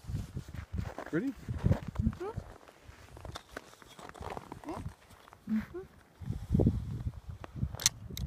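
An Excalibur crossbow being cocked by hand with its front resting on the ground, with low scuffing and knocking sounds and a sharp click near the end.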